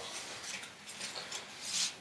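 Faint rustling and small taps of paper cards being gathered up by hand on a tabletop.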